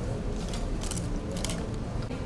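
Camera shutters clicking in two short bursts about half a second apart, as photographers shoot, over a steady low background din of a busy hall.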